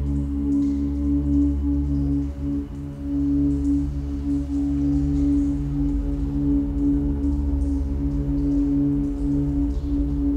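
Experimental drone music: steady, sustained tones held over a continuous deep hum, with a lower tone pulsing slowly on and off.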